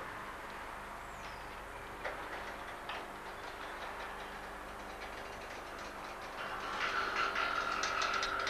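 Wooden up-and-over garage door swinging open, its mechanism rumbling with a couple of knocks, then clattering and squealing more densely from about six and a half seconds in.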